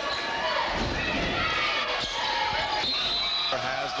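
A basketball bouncing on a hardwood gym floor during a free throw, over the noise and voices of a crowd in the gym.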